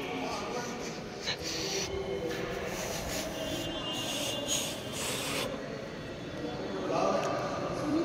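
Faint, indistinct voices and general room noise echoing in a large stone-floored hall, with a few soft clicks.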